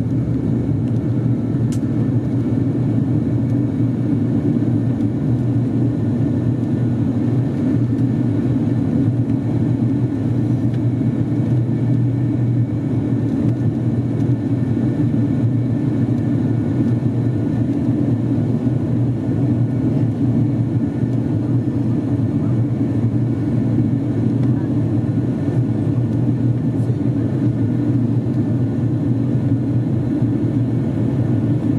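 Steady cabin drone of an ATR 42-600's Pratt & Whitney PW127 turboprop engines and six-blade propellers in the climb just after takeoff: an even, low hum with a few fainter steady tones above it.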